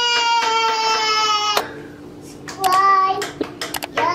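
A young child's long, high-pitched held "weeeh" squeal, sliding slightly down in pitch and cutting off suddenly about a second and a half in. A few sharp clicks and taps and a short child's vocal sound follow near the end.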